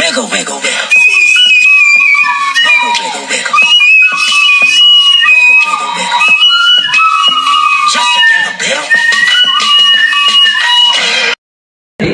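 A recorder blown hard and shrill, playing a slow melody of held notes that step between higher and lower pitches, with a rough, noisy edge. It cuts off abruptly near the end.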